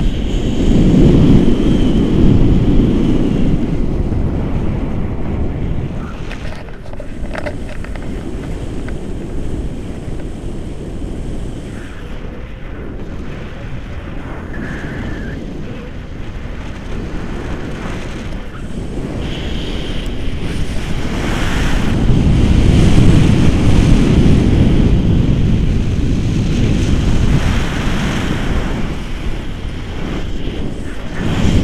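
Wind buffeting an action camera's microphone in paraglider flight: a loud low rumble that swells in the first few seconds, eases off through the middle, and swells again in the second half.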